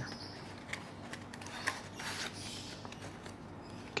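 Cardboard and paper packaging handled by hand: soft rustling with a few small clicks, and a brief louder crinkle about two seconds in.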